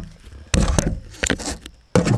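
Hands handling a firework tube and its fuse close by: a run of irregular clicks, taps and rustles, louder about half a second in and again near the end.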